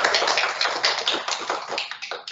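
Small group of people applauding, the clapping thinning and fading toward the end.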